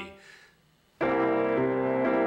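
A C7 chord struck on an upright piano about a second in: C octave in the bass with E, C, B-flat and G in the right hand, held and ringing.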